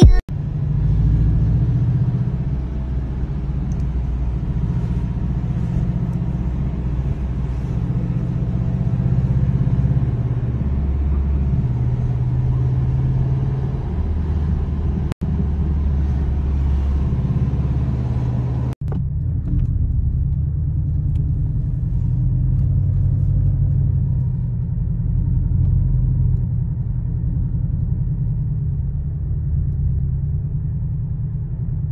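Car engine and road noise heard from inside the cabin while driving: a steady low rumble that swells and eases with the car's speed, broken by two brief dropouts.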